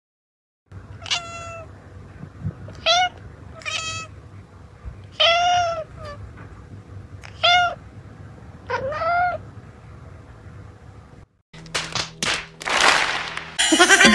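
Domestic cat meowing six times, short calls spread over about eight seconds, the fourth the longest and the last rising in pitch. Then come a few knocks and a burst of rushing noise.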